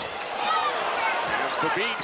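Live college basketball play in an arena: crowd noise with short sneaker squeaks on the hardwood, under TV commentary.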